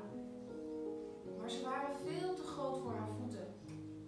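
Electronic keyboard playing slow, sustained notes and chords, with a low bass note entering about three seconds in. A voice comes in over the keyboard for about a second and a half near the middle.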